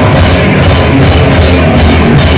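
A live rock band playing loud, with a heavy bass and drum low end, recorded close and dense.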